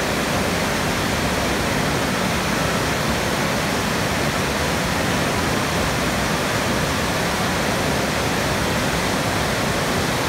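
Fast stream rushing over boulders in whitewater, a steady, unbroken rush of water.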